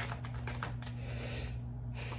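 A deck of tarot cards being shuffled hand to hand: a quick run of light card clicks that thins out near the end.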